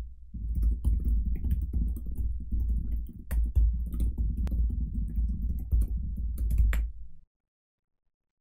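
Computer keyboard typing: a run of quick, irregular keystroke clicks over a low, dull clatter. It stops suddenly about seven seconds in.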